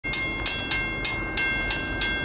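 Railroad grade-crossing bell ringing steadily, about three strikes a second, as the warning for an approaching train.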